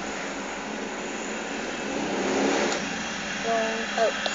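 Steady whooshing noise of an electric fan running in a small room, with a couple of short faint tones near the end.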